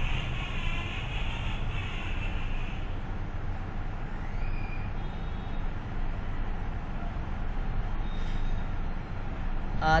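Steady low background rumble, with a faint wavering higher tone over the first three seconds.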